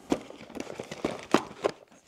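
Cardboard accessory box being handled and opened by hand, with a handful of sharp clicks and taps from the packaging and the parts inside it.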